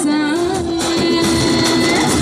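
Live singing amplified through a PA system: one voice holds a long, steady note over music.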